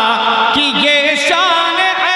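A man singing a naat, a devotional Urdu poem in praise of the Prophet, in held, ornamented notes that bend and waver in pitch.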